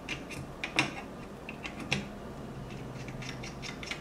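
Small, irregular metallic clicks and scrapes of a Leica M10 hand grip being fitted against the camera's base while its screw is worked into the tripod socket, with a sharper click just under a second in.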